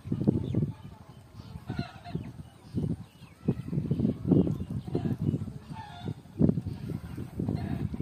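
Geese honking several times, over a low irregular rumble.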